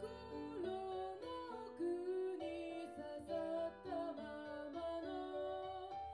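A woman singing a melody over her own Roland FP-4 digital piano accompaniment, with sustained chords and notes changing every second or so.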